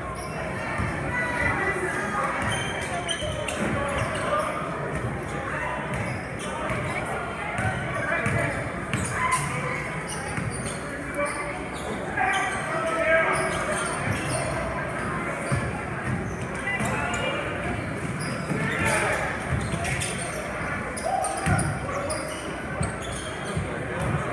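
A basketball bouncing on a hardwood gym floor during play, with many spectators talking around the court in a large, echoing gym.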